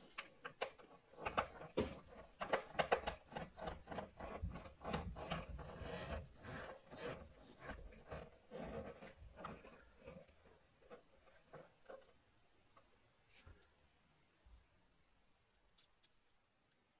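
Hand screwdriver turning small Phillips screws into a laptop's frame: an irregular run of scraping, rasping clicks, two or three a second, that thins out to a few faint ticks about twelve seconds in.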